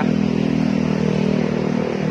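Steady hum of motor traffic on a city street: a constant low engine drone with road noise.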